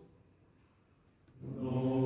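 A small vocal ensemble singing a cappella in long held chords. The chord dies away into about a second of near silence, and the voices come back in together on a new sustained chord about one and a half seconds in.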